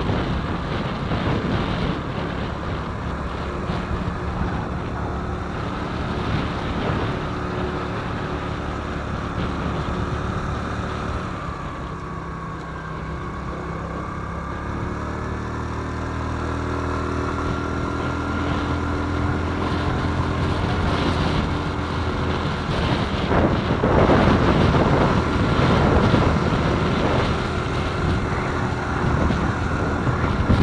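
Small scooter engine running while wind buffets the microphone. About a third of the way in, the engine note dips and quietens, then climbs again, and the wind grows louder in gusts in the last part.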